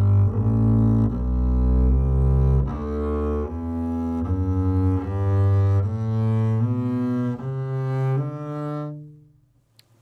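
Double bass bowed legato, playing a G major scale in quarter notes slurred in pairs, climbing step by step up to the D on the G string and back down again. The last low note dies away near the end.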